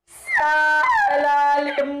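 A long wailing howl in two drawn-out notes. Each slides down in pitch and then holds steady.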